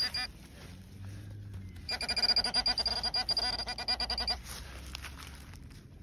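A handheld metal-detecting pinpointer probed into a dig hole gives a rapid pulsing electronic tone, about ten pulses a second, for a couple of seconds near the middle. The tone signals metal close to the probe tip.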